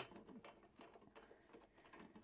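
Faint small clicks and ticks of a red hand-knob screw being turned by hand to bolt a Lock-N-Load dirt bike mount down to the van floor, with one sharper click at the very start.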